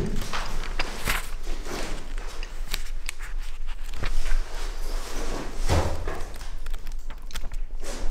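Old paper pages of a booklet being turned by hand: irregular rustling with short soft knocks as the leaves are flipped and handled.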